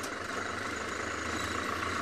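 Open safari vehicle's engine running steadily at low speed as it crawls through tall grass.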